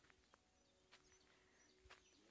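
Near silence outdoors, with faint birds calling and a couple of light clicks.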